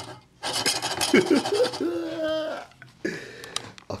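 A person's voice making a rasping, drawn-out sound without words, starting about half a second in, bending in pitch and ending on a held note, followed by a few faint clicks.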